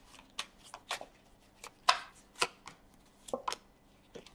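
A tarot deck being shuffled by hand: a run of irregular soft card snaps and slides, with a few louder strokes midway. Near the end, cards are laid down on a wooden table.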